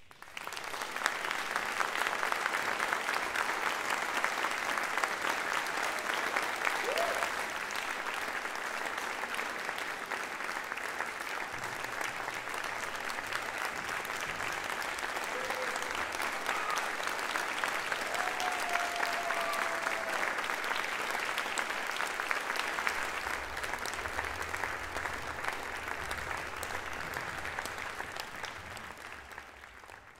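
Audience applauding at the close of a performance: the clapping breaks out suddenly, holds steady, and fades away near the end, with a few faint voices calling out from the crowd.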